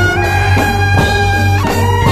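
Javanese slompret, double-reed wooden shawms, playing a nasal melody that holds notes and steps between them, over drum strokes and a low steady drone.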